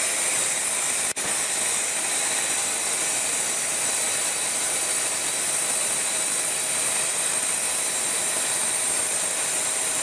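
MK wet rock saw running, its water-fed blade grinding steadily through a rock pushed slowly into it, with a constant high hiss and whine. The sound drops out briefly about a second in.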